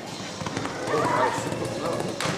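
Indistinct voices of people talking, with the sounds of a horse cantering in a sand arena mixed in around the middle.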